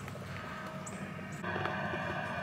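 Quiet outdoor background noise with a low steady hum, getting a little louder about one and a half seconds in.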